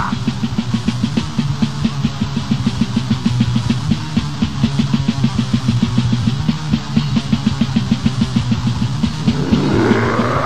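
Death-metal band playing from a live recording: a distorted guitar riff over fast, even drumming, with no vocals in this stretch.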